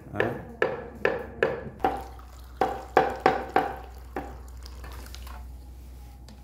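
A cleaver chopping boiled pork on a wooden chopping block: sharp, evenly spaced strikes, two to three a second, stopping about four seconds in. A softer, steady sound follows.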